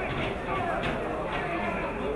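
Indistinct voices of people talking, over a steady outdoor background noise.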